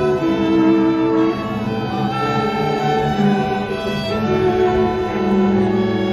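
Youth string orchestra of violins and cellos playing a flowing passage of held, bowed notes that change about every second.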